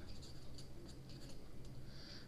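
Ballpoint pen scratching on paper as a word is hand-written, in faint short strokes.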